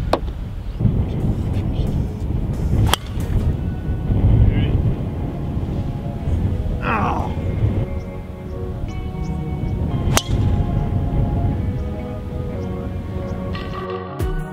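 Golf driver striking the ball off the tee, a sharp crack about three seconds in, with a second similar crack about ten seconds in. Wind rumbles on the microphone throughout, and background music comes in during the second half.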